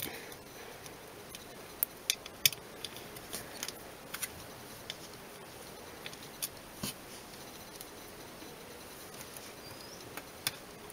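Faint, irregular small clicks and ticks of a precision screwdriver and tiny screws on a Nook HD tablet's metal back plate as the screws are driven in and tightened.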